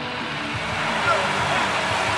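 Traffic passing on the interstate: a steady rush of road noise that swells slightly, over a low steady hum.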